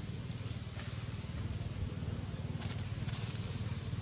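Outdoor ambience: a steady low rumble under an even high hiss, with a few faint ticks.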